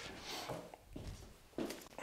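Faint footsteps and handling noise on a wooden parquet floor, with a brief louder scuff or rustle about one and a half seconds in.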